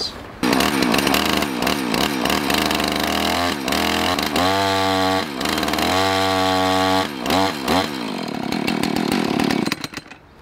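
Husqvarna two-stroke chainsaw running with its bar left loose, revved up and down and twice held at a steady pitch, then dropping off and cutting out near the end. The chain is binding on burred drive links that won't seat in the bar groove, which overworks the engine.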